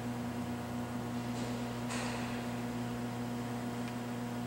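Steady low electrical mains hum from powered equipment, with two faint clicks about one and a half and two seconds in.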